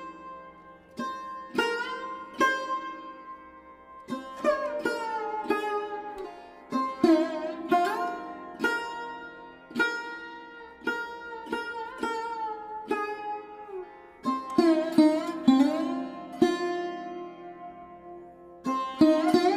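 Background music: a plucked string instrument in a sitar-like style plays a slow melody of ringing notes, some bending and sliding in pitch, over a steady low drone.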